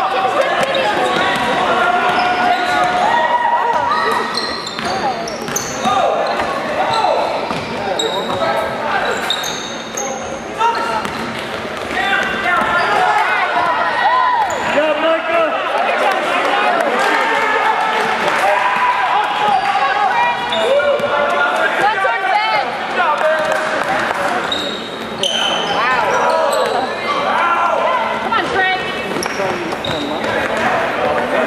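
Basketball play on a hardwood gym floor: the ball dribbling, short high sneaker squeaks, and players and spectators calling out and talking throughout, echoing in a large gym.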